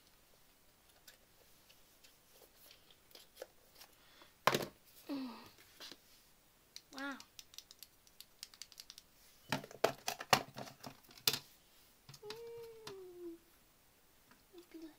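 Handling of an Apple Siri Remote, its box and a plastic case on a desk: a sharp knock about four and a half seconds in and a burst of clicks and taps around ten to eleven seconds. Short hummed sounds from a voice fall in between, the last one a falling hum near the end.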